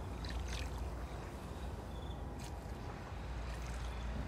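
Steady low hum under a faint even hiss, with a few faint soft ticks.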